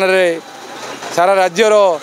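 A man speaking, with a pause of under a second in the middle, where only low background noise is heard.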